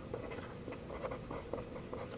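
Pen writing on paper, a faint scratching with small ticks as the strokes are made.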